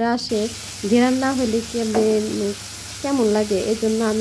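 Chopped onions frying in hot oil in a wok, a steady sizzle, with a woman's voice talking over it from about a second in and again near the end.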